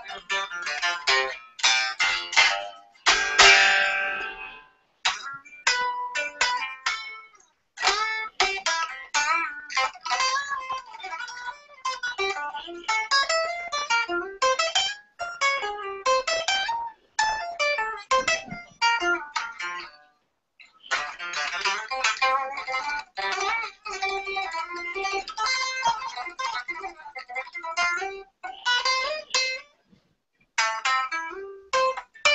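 Electric guitar played in fast lead runs, shredding, with a loud strummed chord a few seconds in. It comes through a video call's audio, thin and choppy, cutting out briefly about two-thirds of the way through.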